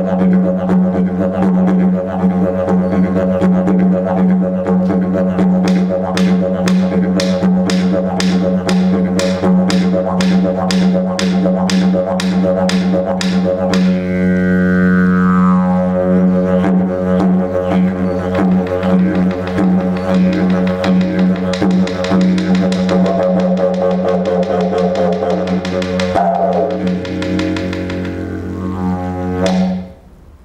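Wooden didgeridoo played in one unbroken low drone. Fast, even rhythmic pulses run through the first half, then a falling sweep in the overtones about halfway, with more shifting overtones near the end before the drone stops at the very end.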